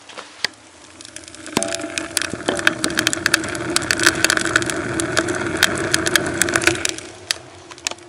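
Freshly lit wood fire in a small iron stove, now drawing: a steady hum with frequent crackles and pops from the burning logs. It rises about a second and a half in and eases off near the end.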